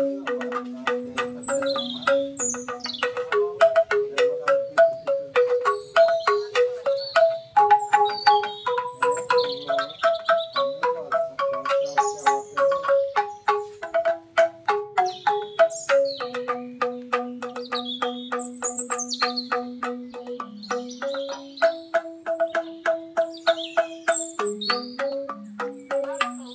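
Banyuwangi angklung music: struck bamboo instruments play a flowing melody in fast, evenly repeated strokes, so each note sounds as a rapid tremolo. Short bird chirps are mixed in high above the music throughout.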